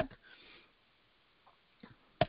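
A woman's faint intake of breath through the nose and mouth just after she stops speaking, then a quiet pause with a couple of tiny ticks near the end.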